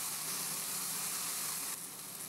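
Steady sizzle of a whole raw chicken sitting in a preheated cast iron Dutch oven, its skin searing against the hot iron. The sizzle turns a little softer near the end.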